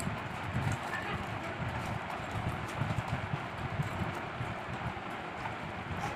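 People eating rice by hand from stainless steel plates: irregular soft knocks and small clicks of fingers working food on the plates, and chewing, over a steady background hiss.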